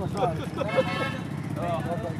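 Voices talking over a small engine running steadily, a low even rumble with a fine regular pulse underneath.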